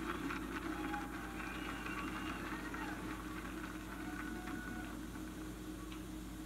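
Old cassette recording playing through a portable boombox's speakers at a lull between pieces. Steady tape hiss and mains hum carry faint, indistinct distant voices.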